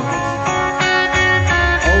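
Rock band playing live, electric guitar to the fore over bass and drums, in an instrumental stretch between sung lines; a voice comes back in right at the end.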